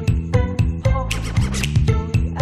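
One-man-band performance of a Khmer Surin song: strummed acoustic guitar with drum and cymbals over a steady bass, keeping a regular beat.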